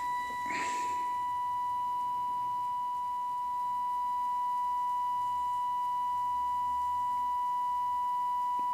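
Steady 1 kHz test tone from a Trio 9R-59D valve communication receiver's loudspeaker. It is the demodulated audio of a 455 kHz IF test signal modulated with a 1 kHz tone, heard while the IF transformers are being peaked. There is a brief rustle about half a second in.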